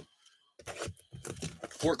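Wrapping on a sealed trading-card box crinkling and tearing as it is opened: a quick run of crinkles and small rips starting about half a second in.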